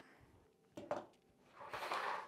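Clear acrylic quilting ruler and rotary cutter being moved and set down on a cutting mat: a soft knock just under a second in, then a short sliding rustle near the end.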